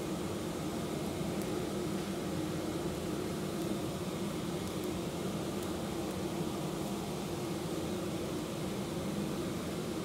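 Steady hum and hiss from an induction hob running both zones at full power, with 400 ml of water boiling in a stainless steel pot.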